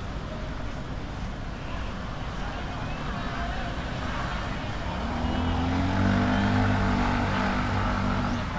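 Street traffic noise with a nearby vehicle engine running, growing louder from about five seconds in and loudest near the end.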